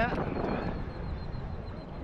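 Small sea waves lapping and sloshing around a camera held at the water's surface, with a low rumble, fading slightly.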